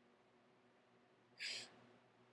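Near silence over a faint steady hum, broken about one and a half seconds in by a single short, sharp breath through the nose or mouth.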